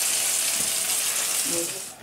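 Full English breakfast frying in a pan on the hob: a steady sizzling hiss that cuts off suddenly just before the end.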